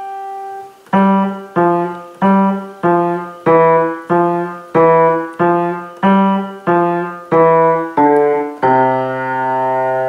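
Kawai grand piano played with both hands. A held note fades, then about a dozen evenly spaced notes are struck roughly every 0.6 s, and the piece closes on a sustained low chord near the end.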